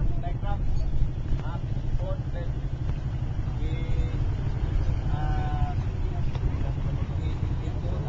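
Distant voices of a group of people talking and calling, untranscribed, over a steady low rumble.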